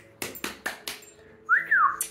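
A person whistling: one short whistle that rises and then falls in pitch near the end, after a few sharp clicks or taps.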